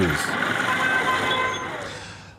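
Street traffic: motorcycles and tricycle taxis running along a rough road, with a few short horn toots, fading out near the end.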